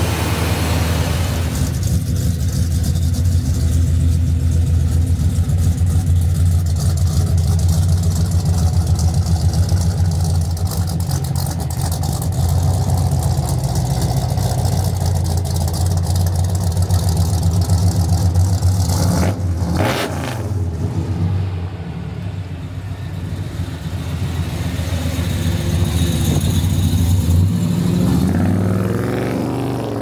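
1970 Chevelle SS's 396 Turbo-Jet big-block V8 running at a steady idle through its dual exhausts. About two-thirds of the way through there is a brief sharp sound, and near the end the engine note rises as the car pulls away.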